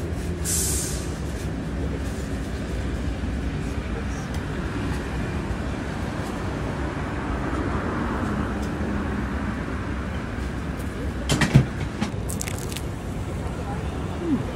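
Steady low background rumble, with a short hiss about half a second in and a few sharp clacks about eleven to thirteen seconds in.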